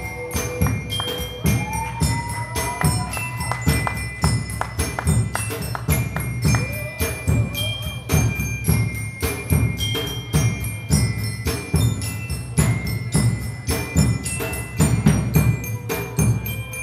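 Live band music: an instrumental passage with a steady drum beat under keyboard, with bell-like sustained tones on top.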